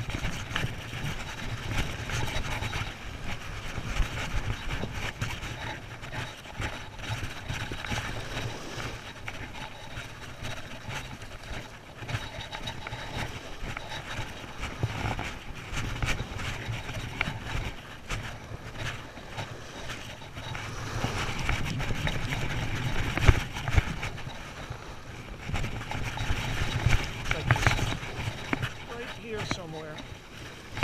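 A conventional fishing reel being cranked steadily against a hooked stingray, with irregular small clicks from the reel. Wind rumbles on the microphone and surf washes on the beach under it.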